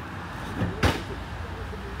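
A single dull thud of an object being struck a little under a second in, with a faint knock just before it. It is too thuddy: a dull impact rather than the metallic clank it was meant to give.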